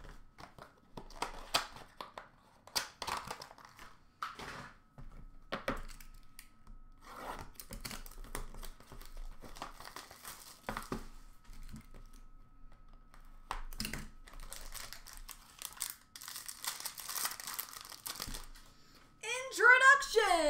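Wrapper crinkling and tearing as a sealed box of trading cards is opened, with rustles and light knocks of cardboard and cards being handled in a series of short bursts.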